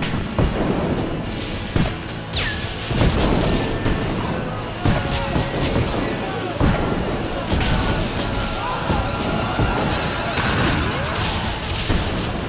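A battle soundtrack: music under repeated crashes and booms, with high, gliding cries.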